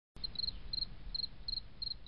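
Cricket chirping: short high chirps of three or four quick pulses each, repeating about three times a second over a faint low rumble.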